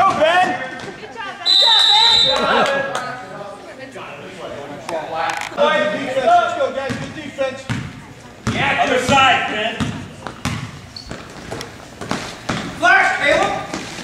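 A basketball dribbled on the gym floor, with voices in a large echoing hall. A referee's whistle blows once, briefly, about a second and a half in.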